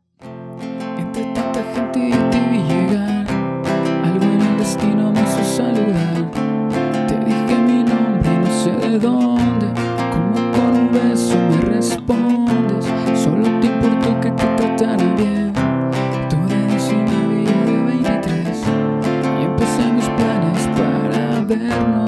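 Nylon-string classical guitar strummed in a steady rhythm, cycling through the chords F, C, Dm7 and B-flat played without a capo.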